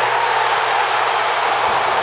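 Stadium crowd cheering loudly and steadily for a strikeout, with no commentary over it.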